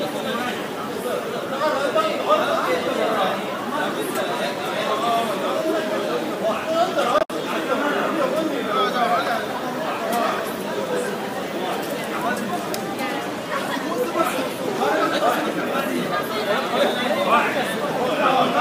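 Several people talking at once, their voices overlapping in an ongoing conversation, with a brief dropout in the sound about seven seconds in.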